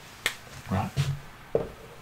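A few short, sharp clicks of a dry-erase marker being handled and uncapped.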